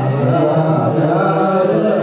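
Ethiopian Orthodox clergy chanting a slow liturgical prayer chant, the voices holding long notes and moving step by step between pitches.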